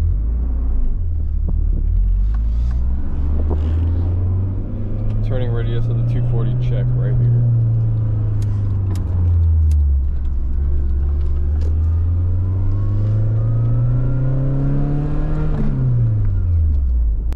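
Nissan 240SX with an aftermarket exhaust accelerating from inside the cabin: the engine note climbs steadily through a gear, eases off and drops with an upshift about nine seconds in. It then climbs again through the next gear and drops with another shift near the end.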